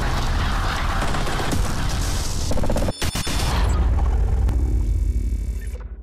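Intro logo sting sound effects: a dense rushing texture over a deep rumble, broken by a brief cut and a cluster of sharp hits about halfway. A heavy low boom follows and fades out near the end.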